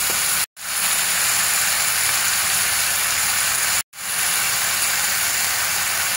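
Minced meat with onion, garlic and freshly added soy sauce frying in a pan, giving a steady sizzle. The sizzle is broken twice by brief silent gaps, about half a second in and just before four seconds.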